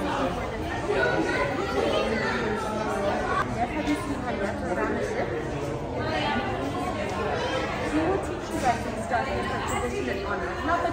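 Indistinct chatter of several people talking at once, continuous throughout, in a large indoor room.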